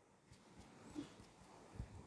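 Near silence: faint room tone, with two soft brief sounds about a second in and near the end.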